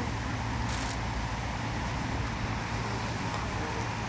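Steady outdoor background noise: a low hum under an even hiss, like distant road traffic, with a brief high hiss about a second in.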